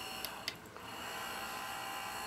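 Two small clicks of a pushbutton switch, then a small Pittman DC motor's faint steady whine drops out for about half a second and comes back as the H-bridge restarts it in reverse.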